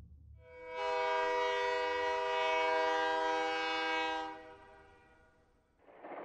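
Steam locomotive whistle: one long steady blast of several notes at once, swelling in, held for about four seconds, then fading out.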